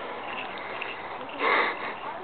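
A runner's breathing close to the microphone, with one loud, sharp breath or sniff about one and a half seconds in.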